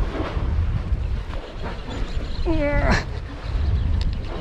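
Wind buffeting the microphone, with one short drawn-out vocal call about two and a half seconds in that falls in pitch at its end.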